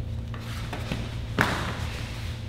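A person being taken down onto foam floor mats during grappling: a few light taps and scuffs, then one sharp thud about one and a half seconds in as the body lands.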